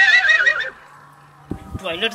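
A horse's whinny, wavering and then falling away within the first second, most likely a comic sound effect.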